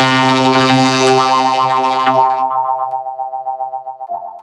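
A loud, sustained, electronically processed pitched tone with many overtones, like a held synthesizer note. It loses its bright upper part about two and a half seconds in, and the remaining lower tones waver and pulse as they fade near the end.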